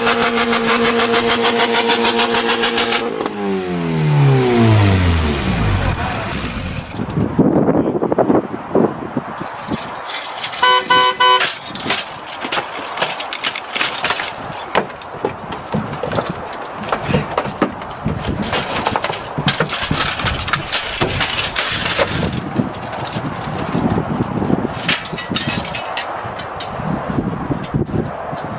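Alfa Romeo 156 engine running at high, steady revs after the car lands on top of the wrecks, then winding down and dying out between about three and six seconds in. Afterwards scattered knocks and clatter with voices, and a short car horn sounding about eleven seconds in.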